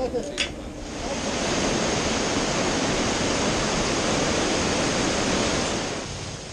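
Fast mountain river running over rocks in white water: a loud, steady rush that starts about a second in.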